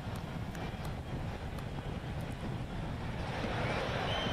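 Steady low outdoor rumble with no speech, the ambient sound of a large open-air scene. A faint high tone comes in near the end.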